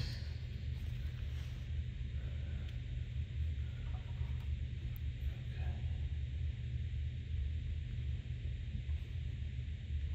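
Steady low hum with an even hiss: background room noise, with no distinct sound from the handling.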